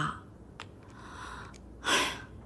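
A woman's short audible breath, a sigh, near the end, after a quiet pause with one faint click about half a second in.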